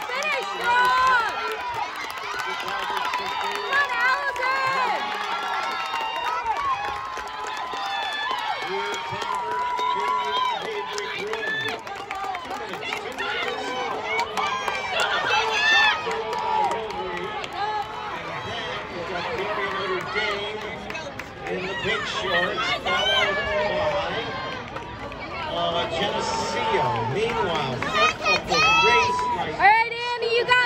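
Grandstand crowd of spectators at a track race: many overlapping voices talking and calling out at once, with the noise rising in places.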